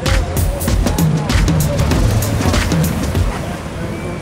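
Background music with a steady beat over a low, steady rumble. The beat stops about three seconds in.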